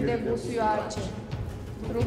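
A voice speaking over sustained background music, with held tones under it.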